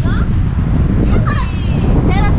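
Wind buffeting the microphone in a loud, steady low rumble, with a few short high-pitched voice sounds near the start and in the second half.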